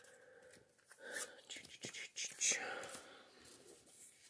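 Trading cards being gathered up and slid across a cloth playmat: irregular paper rustling and scraping, loudest about two and a half seconds in.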